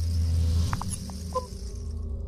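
Intro logo sound effect: a deep, steady low drone with a high airy shimmer over it that fades away near the end, and a few short electronic blips about a second in.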